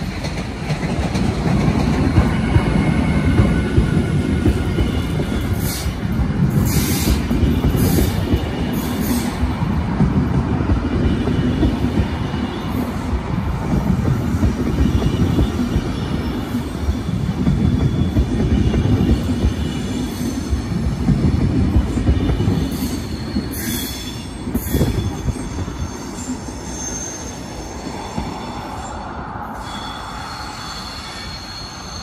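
DSB class EB (Siemens Vectron) electric locomotive hauling a rake of double-deck coaches past at close range: a loud, steady rumble of wheels on rails that swells and fades in pulses as the bogies go by, with faint high-pitched wheel squeal, easing off near the end.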